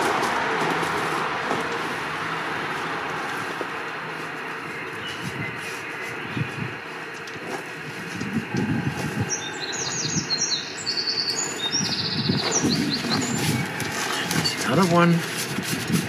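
Gloved hands rummaging and scraping through the ash inside a steel oil-drum pit-fire kiln as fired pots are lifted out. Songbirds chirp in short bursts, most plainly about nine to twelve seconds in, over a steady faint hum.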